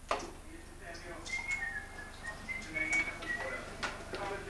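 Faint high whistled notes, a few short held pitches one after another, over a quiet room with scattered clicks.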